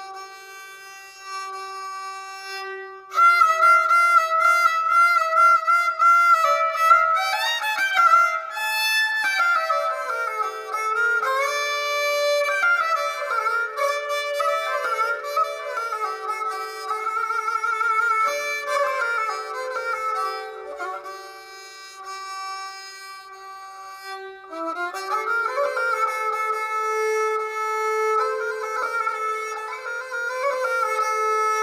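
Baloch suroz, a bowed folk fiddle, playing a fast, ornamented melody over a steady drone note. It comes in much louder about three seconds in, dips for a few seconds about two-thirds of the way through, then picks up again.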